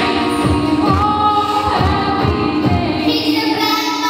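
Live song: a woman singing long held notes into a microphone over a steady beat. The beat drops out near the end.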